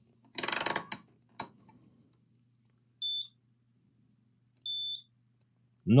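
A rotary multimeter dial clicks rapidly through its detents as it is turned to continuity (short-circuit) mode, followed by a single click. The meter then gives two short, high beeps about a second and a half apart.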